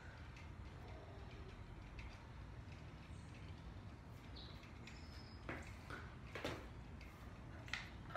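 Faint gulps and crinkles of a plastic water bottle being drunk down in one go, a few short clicks in the second half over a steady low hum.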